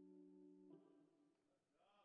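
Faint last held note of the dance music, a steady chord that stops about two-thirds of a second in, followed by near silence.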